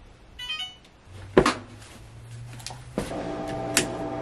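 Electrolux front-load washing machine being set going: a quick run of electronic control-panel beeps, a single loud thump about a second and a half in, then a low steady hum with a steady tone joining near the end.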